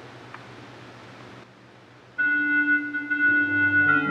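Quiet room tone, then about two seconds in an organ starts playing held chords, with lower notes joining near the end.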